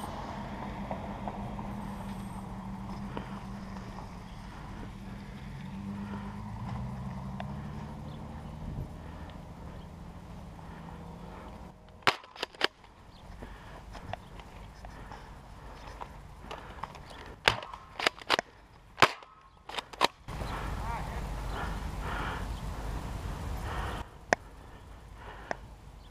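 Nerf foam-dart blasters being fired during play: a run of sharp clacks and snaps about halfway through, several close together, with one more near the end. A stretch of loud rushing noise, like wind or handling on the microphone, comes a few seconds before the end.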